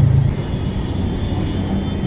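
Steady low background rumble with no speech, like outdoor traffic noise, and a faint thin high-pitched tone that comes in shortly after the start.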